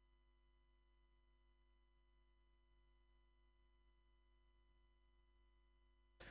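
Near silence: only a very faint, steady electrical hum under the quiet.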